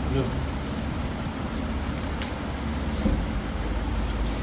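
Steady background noise with a low hum and faint, indistinct voices, and a light click about two seconds in.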